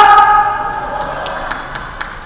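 The tail of a man's voice through a public-address loudspeaker, ringing on as a steady tone after his greeting ends and fading away over about a second, with a few faint scattered taps.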